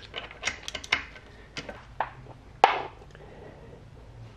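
A 14 mm socket wrench turning the crankshaft bolt of a motorcycle engine through the side cover's inspection hole: a string of irregular sharp metal clicks and clinks, the loudest about two and a half seconds in.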